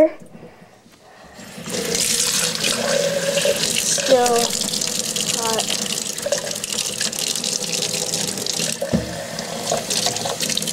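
Cold water running from a kitchen tap into a stainless steel sink and filling a plastic cup, starting about a second and a half in and running steadily. A low thump near the end.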